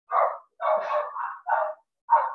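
Dog barking several times in quick succession.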